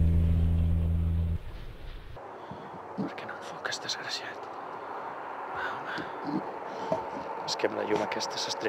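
A sustained distorted electric-guitar chord from theme music rings for about a second and a half and cuts off. Then quiet speech over a steady background hiss.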